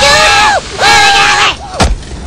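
Cartoon fire burning with a loud, rushing noise around a character who has gone up in flames, with repeated high screams over it.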